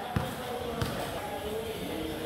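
A volleyball bouncing on the court a couple of times, dull thuds, with faint voices in the hall.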